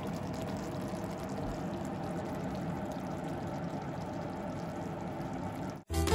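Steady rushing hiss with a faint low hum, the background noise of the kitchen over the cooked fish in the pan; it cuts off suddenly near the end.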